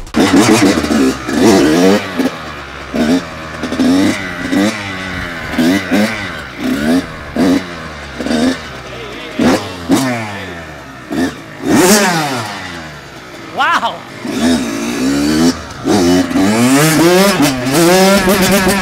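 Kawasaki KX100 two-stroke dirt bike engine revved in repeated throttle blips, each rising and falling in pitch, about one or two a second. It eases off briefly about two-thirds of the way through, then runs steadier at higher revs near the end.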